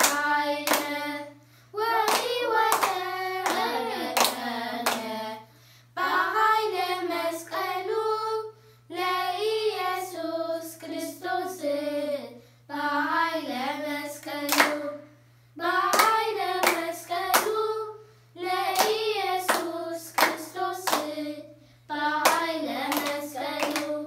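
A group of children singing an Ethiopian Orthodox mezmur (hymn) together, in phrases a few seconds long separated by short breaths, with hand claps throughout.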